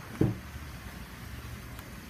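Cadillac SRX door being opened: a short thump about a quarter second in, then a faint click near the end, over a steady low hum.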